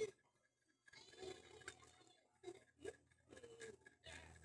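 Near silence: faint background noise over a video call, with a few soft, indistinct sounds.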